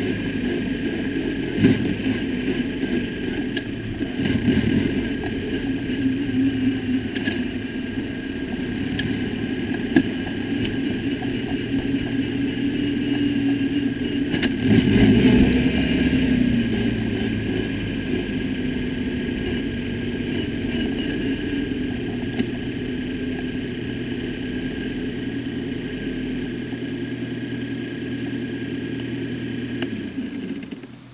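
Onboard sound of a Mygale Formula 4 car's 1.6-litre Ford EcoBoost turbo four-cylinder running at low revs in first gear, crawling at low speed through the pit lane. There are a few sharp clicks and a brief louder spell about halfway through.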